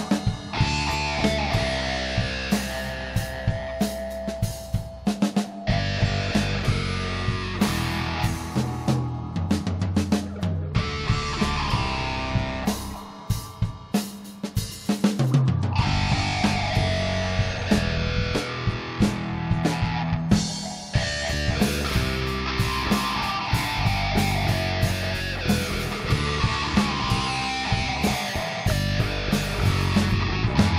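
Instrumental rock improvisation by a trio of electric guitar, bass guitar and drum kit. The band thins out to a quieter, sparser passage about halfway through, then comes back in at full volume.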